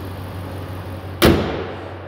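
The pickup truck's hood is slammed shut about a second in: one loud bang that dies away quickly. Under it runs the steady low hum of the 5.7-litre Hemi V8 idling.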